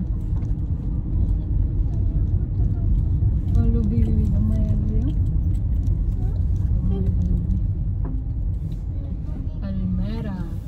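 Steady low road and engine rumble of a car driving, heard from inside the cabin, with brief quiet voices of the passengers.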